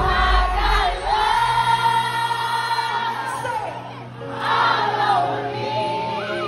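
Live concert music heard from within the audience: a female singer performing into a microphone over the backing music. She holds one long note early on, and the deep bass drops out for most of the stretch before coming back near the end.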